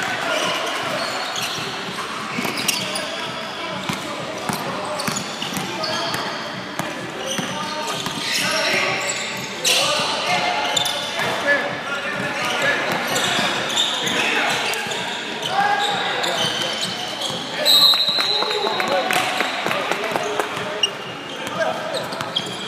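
Basketball game in a gym: a hubbub of spectators' and players' voices, with a basketball bouncing on the court and scattered sharp clicks. A brief high steady tone stands out about three-quarters of the way in.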